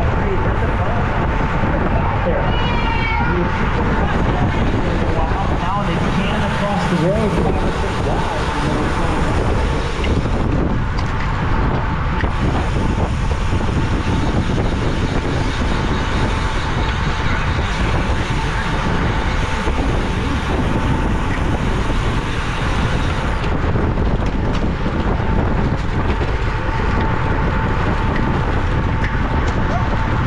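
Steady wind rushing over the microphone of a camera mounted on a road racing bike moving at about 22 to 25 mph.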